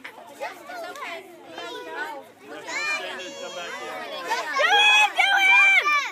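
Children's voices chattering and calling out, getting louder about two-thirds of the way in, with high-pitched drawn-out shouts near the end.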